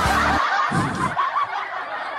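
A man chuckling and laughing, just as the karaoke backing music cuts off about half a second in.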